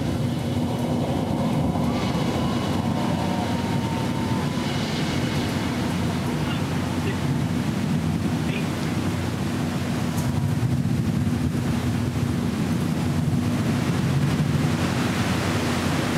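Steady rushing noise with a low hum from an open live audio feed of the rocket flight, with a faint tone that drifts slightly downward a couple of seconds in and fades out.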